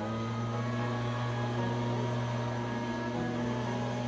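A low, steady engine drone holding one pitch, over background music.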